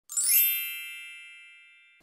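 A bright chime sound effect for a logo intro: a quick upward sparkle of bell-like tones, then a chord that rings and slowly fades away over about a second and a half.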